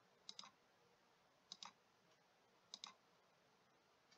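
Faint computer mouse clicks against near silence: three quick double clicks, each a press and release, about a second and a quarter apart.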